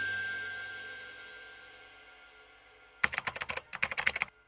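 The last chord of the background music fades away. About three seconds in comes a quick run of keyboard-typing clicks, a sound effect for a credit line being typed out.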